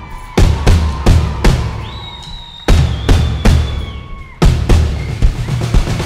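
Live band percussion break: several drums struck together in heavy unison beats, mostly in groups of three with short gaps between groups. A high held tone sounds through the middle.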